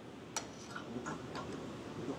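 A sharp click about a third of a second in, then a few faint ticks and light handling noise: a small metal angle gauge being fitted against a reel mower cutting unit.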